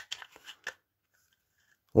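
Hard plastic blender housing parts handled and turned in the hand, giving a few light clicks in the first second.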